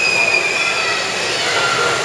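Loud, steady din of an indoor swimming pool during a backstroke race: splashing swimmers and spectators. A long shrill high note fades out about a second in, and a shorter, lower note comes near the end.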